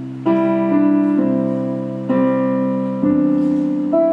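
Piano accompaniment playing slow, sustained chords, a new chord struck about once a second and fading between strikes, with no singing over it.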